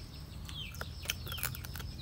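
Birds chirping: repeated short falling chirps, about two a second, over a low steady hum, with a few light clicks.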